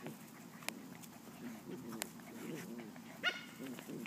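Eight-week-old puppies play-fighting: soft low growling and grumbling, then one short, high yelp a little after three seconds in. There are a few sharp clicks as well.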